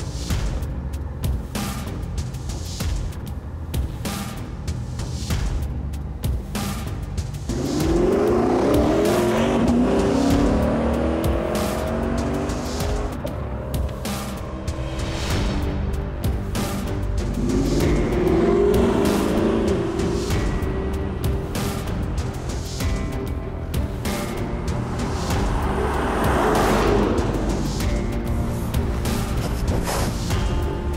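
Lexus GS F's 5.0-litre V8 accelerating hard, its pitch rising through the gears, in three loud passes: the first about a quarter of the way in, the second past the middle, the third near the end. Background music with a steady beat plays throughout.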